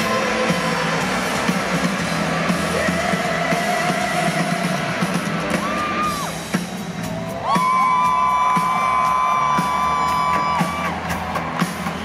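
Live rock band playing in an arena, recorded from among the audience: a loud, dense band mix with vocals, and a long, high held note that comes in about halfway through.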